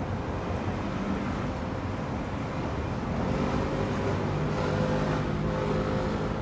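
Road traffic: a vehicle engine's low rumble over steady traffic noise, growing louder about halfway through as it nears.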